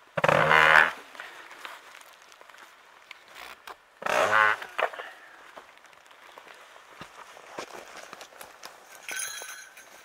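Rope being hauled over a tree branch to hoist a hanging food stash bag. It gives two loud, buzzing creaks, one right at the start and one about four seconds in, each under a second long. Light rustling and ticking come in between, and a short hiss near the end.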